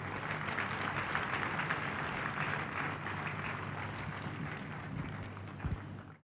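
A congregation applauding: many hands clapping together, fullest in the first couple of seconds and then slowly thinning, over a low steady hum. A short dull thump comes near the end.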